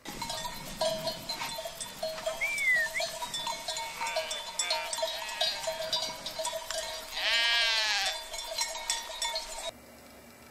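A flock of sheep bleating, with one long, loud bleat about seven seconds in; the sound cuts off suddenly just before the end.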